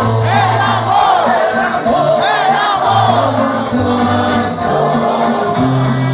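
Live brass-band music: a tuba holds long bass notes, about a second each, under several voices singing together, with crowd noise mixed in.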